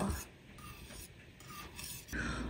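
Wire whisk faintly rubbing and scraping through thick lemon curd filling in a stainless steel saucepan.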